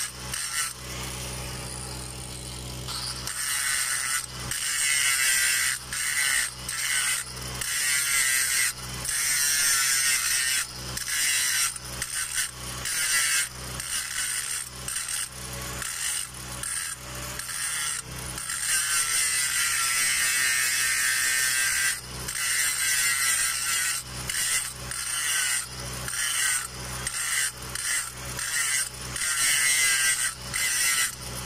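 Electric angle grinder grinding a weld seam on a steel pipe. Its high whine sags and recovers as the disc is pressed into the metal, and the sound breaks off briefly many times.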